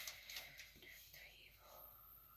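Near silence, with faint whispering as of someone murmuring to herself while reading.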